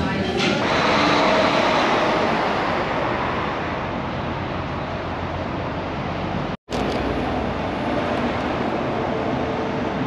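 Street traffic: a steady rush of car engine and tyre noise from vehicles passing, loudest a second or two in, broken by a short dropout about two-thirds through.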